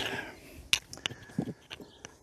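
Handling noise: a few sharp clicks and knocks spread over a couple of seconds as a drone's remote controller is picked up and handled.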